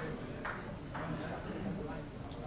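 A celluloid-type table tennis ball bouncing, two sharp light pings about half a second apart.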